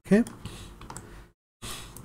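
A few light computer keyboard clicks, with the sound cutting out completely for a moment about a second and a half in.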